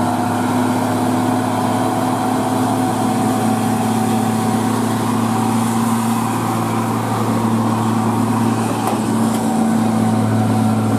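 Diesel engine of a Hino tractor-trailer running steadily under heavy load as it hauls a precast concrete bridge girder up a steep winding climb, a deep even hum at constant pitch.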